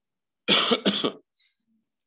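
A man coughing twice in quick succession, the first cough about half a second in.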